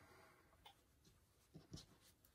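Near silence with faint rustles of a fabric crochet-hook wrap being rolled up by hand: a soft one about half a second in and a couple more near the end.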